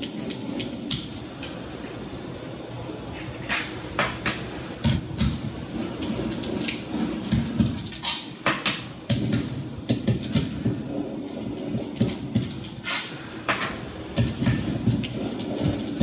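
T-handle socket wrench turning out the camshaft bearing-cap bolts on a Mazda BP cylinder head: a steady metallic rattle with scattered sharp clicks from the tool and caps.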